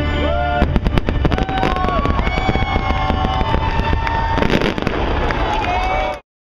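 Fireworks bursting and crackling in rapid succession from about half a second in, over show music with long held notes.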